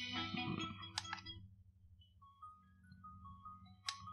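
Softy SBS-10 Bluetooth speaker playing music from a memory card. The track trails off, with a sharp click about a second in, and then the next track begins quietly with a few single notes. Another click comes near the end.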